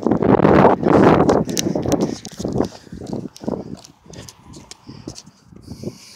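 A runner's heavy breathing and footfalls on a rubber track, picked up close on a handheld phone. The breathing is loudest in the first couple of seconds, then it gives way to softer, regular steps about three a second.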